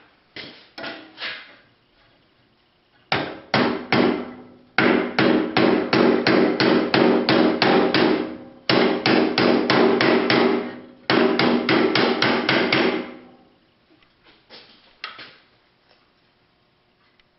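Hand hammer striking red-hot round steel bar on a steel auto body dolly used in place of an anvil edge. It lands long runs of quick blows, about three a second, each ringing with a metallic tone, then a few lighter taps near the end as the bar's end is bent the opposite way to the first.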